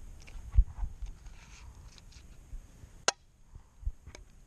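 Handling sounds as butter is worked with a knife into a frying pan: a low bump about half a second in, a few faint light clicks, and one sharp click about three seconds in.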